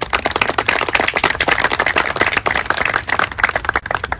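A small audience applauding: dense, irregular hand clapping that thins out near the end.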